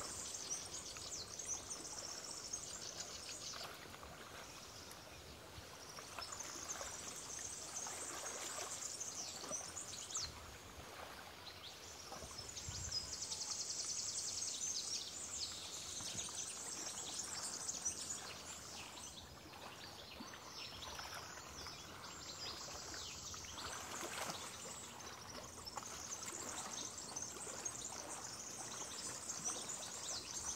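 Outdoor ambience: high-pitched chirring that swells and fades in waves every few seconds, over a faint steady hiss.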